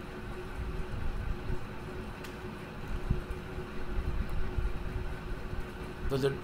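Steady low background rumble with a faint constant hum underneath, plus a couple of faint clicks.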